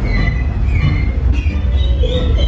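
Dark-ride car rolling along its track with a steady low rumble, with short high tones from the ride's soundtrack and effects above it.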